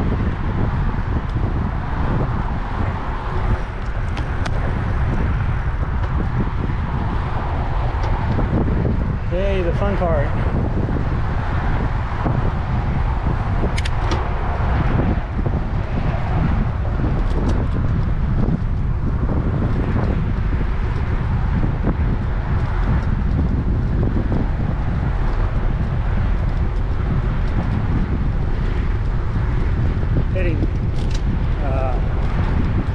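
Steady wind rushing over the microphone of a camera on a moving bicycle, with traffic noise from the causeway road alongside. A short wavering pitched sound comes about ten seconds in.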